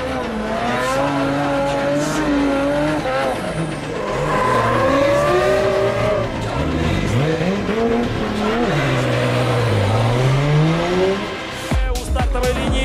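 Drift cars' engines revving hard, the pitch climbing and dropping again and again, with tyres squealing as they slide.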